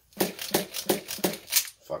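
A quick run of clicks and rattles, about three a second, from hands working the RC10GT nitro truck's pull starter, whose one-way bearing is slipping.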